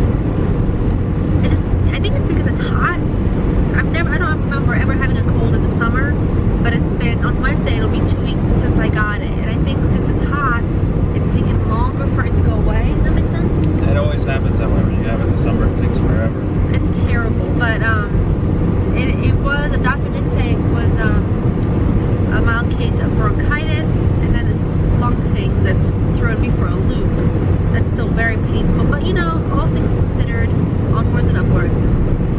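Steady road and engine noise inside the cabin of a car driving on a highway, a constant low rumble under a woman's talking.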